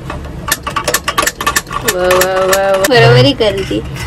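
Hand-held spark gas lighter clicking repeatedly, several sharp clicks in about a second and a half, as it is used to light a gas stove burner.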